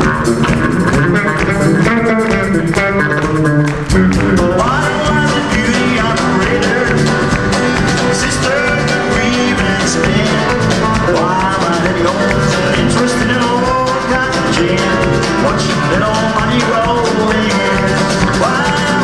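Live country band playing an instrumental passage on electric bass, electric guitar and drums, with a short break at about four seconds followed by sliding, bending notes.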